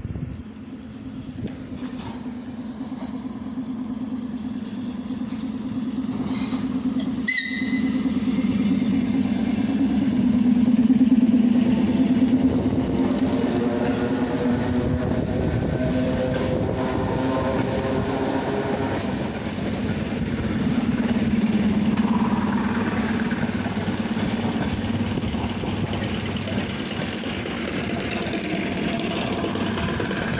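ER9T electric multiple unit pulling away: a steady low hum, with the train's running noise building as it passes and whines rising in pitch from about twelve seconds in. A single sharp crack comes about seven seconds in, as the pantograph sparks on the iced-up contact wire.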